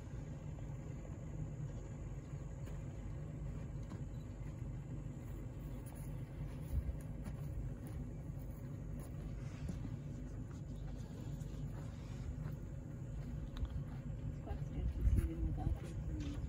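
A steady low rumble with no clear pitch, of the kind an idling vehicle engine or wind makes, with a few faint brief sounds over it.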